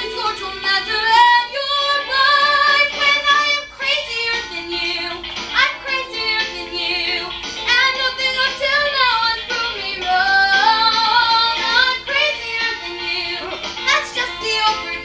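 A young girl singing a musical-theatre song over accompaniment, in long held notes, some with vibrato.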